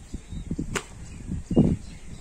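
Handling noise from a small plastic jar holding a rescued cobra as it is held and capped: irregular low knocks and rustles, a sharp click about three quarters of a second in and a louder thud about a second and a half in.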